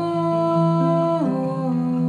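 A woman's voice holds a long wordless note, stepping down to a lower note just over a second in, in a slow lullaby melody. Gently played classical guitar accompanies it.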